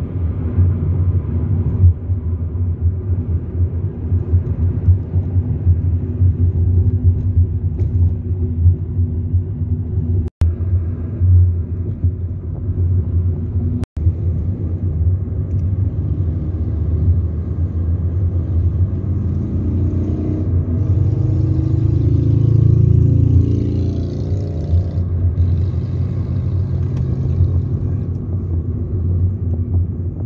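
Road and engine noise heard from inside a moving car: a steady low rumble. It drops out completely twice for an instant and swells louder for a few seconds past the middle.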